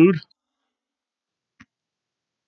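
A man's spoken word trailing off, then silence broken once by a single faint, brief click.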